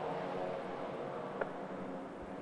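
Porsche racing cars' engines heard faintly and steadily, several cars running on the circuit, with a small click about one and a half seconds in.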